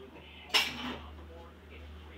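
A single sharp clatter of cutlery against a dish about half a second in, ringing briefly, over a low steady hum.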